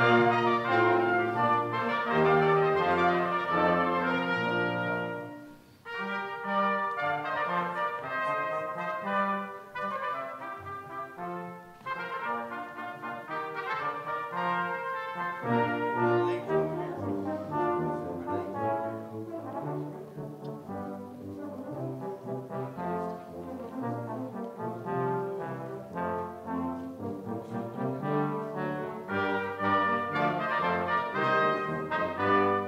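Brass ensemble playing slow, held chords, with a short break about five seconds in before the music goes on.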